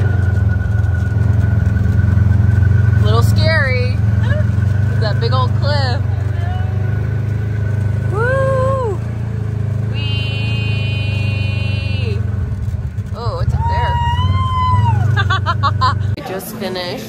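Side-by-side UTV engine running steadily, with people's wordless exclamations rising and falling over it, and a steady high tone for about two seconds midway.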